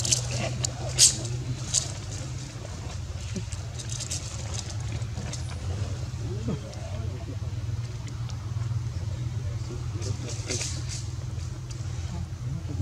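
A steady low hum with faint distant voices over it, and a few sharp clicks near the start and again near the end.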